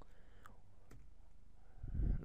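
Computer keyboard keystrokes: a few faint, separate key clicks about half a second apart.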